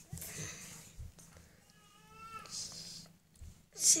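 A kitten's single faint mew, about a second long, near the middle, against soft rustling from the nursing litter.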